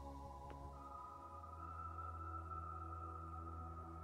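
Quiet ambient background music of sustained, held chords that shift to a new chord about a second in.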